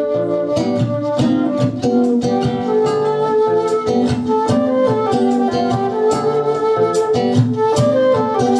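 Live acoustic band playing an instrumental passage: a flute carries the melody over a strummed acoustic guitar and a steady snare drum beat.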